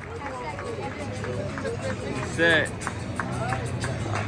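Stadium crowd chatter from many voices, with one loud shout about two and a half seconds in and music playing underneath.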